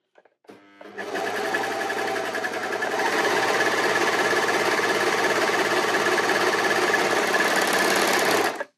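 Brother 1034D overlocker stitching and trimming a strip of fabric under foot-pedal control, starting about a second in and picking up speed about three seconds in. The machine is correctly set up, sewing with good tension, good stitching and good cutting.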